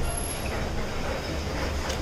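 A steady low rumble of background noise, with a faint click near the end.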